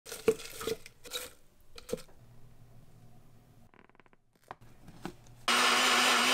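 Leafy greens rustling as they are pushed by hand into a NutriBullet personal blender cup, then a few clicks. Near the end the NutriBullet's motor starts and runs loud and steady with a constant hum, blending a smoothie.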